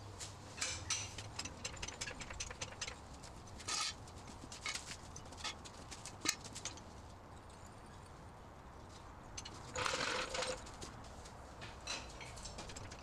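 Faint clicks and light metal knocks from a trolley jack and steel jack stands being worked under the rear of a car, with a louder rushing noise lasting about a second near the end.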